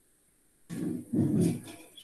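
Two short, low grunt-like vocal sounds from a man, following a brief dead silence.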